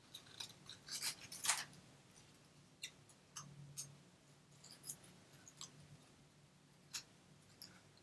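Small scissors snipping a paper leaf out of its sheet: faint, short snips, a quick few about a second in and then single ones at intervals.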